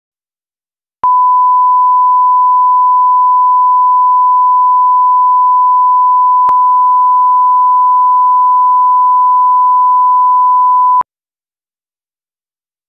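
Broadcast line-up test tone played with colour bars: one steady, loud, pure tone that starts about a second in and stops abruptly after about ten seconds, with a faint click near the middle.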